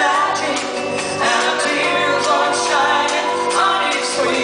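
Live pop band playing a soft ballad, with a lead singer and backing voices over keyboards, electric guitars, bass and drums.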